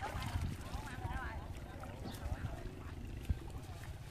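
People talking indistinctly nearby over a steady low rumble, with one sharp knock about three seconds in.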